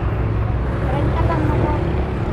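Open-air market background: a steady low rumble with faint voices of people talking at a distance, the voices about halfway through.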